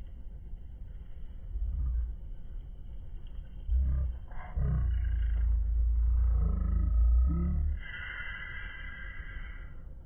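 Llamas calling: a few short calls that rise and fall in pitch, over a loud low rumble that starts about four seconds in and cuts off near eight seconds.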